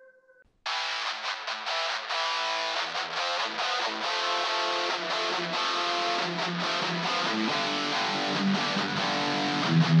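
Black metal song intro: a ringing tone dies away, then after a brief silence distorted electric guitars start abruptly under a second in and keep playing a dense riff.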